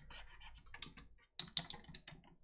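Faint, irregular clicking of computer keys, with a couple of louder clicks about one and a half seconds in.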